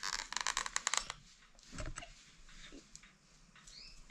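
Plastic and cardboard packaging of a spiral potato cutter being handled as its parts are taken out. A dense, rapid crackle lasts about a second, then a few scattered light clicks follow.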